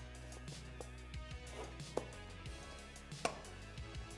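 Quiet background music with a few short, sharp knocks of a mountain-bike tyre being worked by hand onto its rim, the loudest a little after three seconds in.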